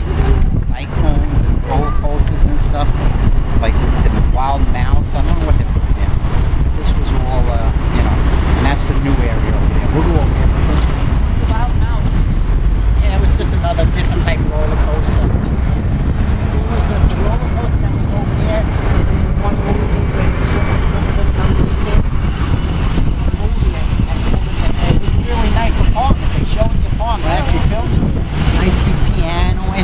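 A man talking on a city street, with a steady low rumble of wind on the microphone and passing traffic under his voice.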